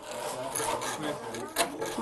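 A hand file rasping back and forth across the edge of an acrylic piece being shaped.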